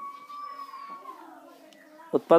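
A faint, drawn-out high call lasting about a second and a half, sliding down in pitch near the end.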